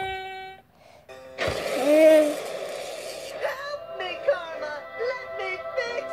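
Cartoon soundtrack heard through a tablet's small speaker: a held note cuts off about half a second in, then a noisy burst with a wavering voice, then music with cartoon character voices over it.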